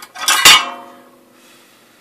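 Soldering iron pulled out of its coiled metal spring stand: a loud metallic clank about half a second in, ringing briefly as it dies away.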